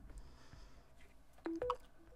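Short electronic chime about a second and a half in, a low tone stepping up to a higher one: the Samsung Galaxy Z Flip 4's charging sound, signalling that it has started charging wirelessly through its case on the charging pad.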